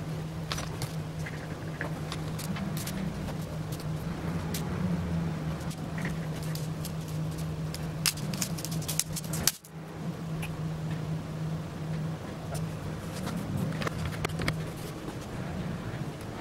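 A steady low machine hum with scattered small clicks and knocks from a bar clamp and wood being handled on a bending jig. There is a brief break a little over halfway through.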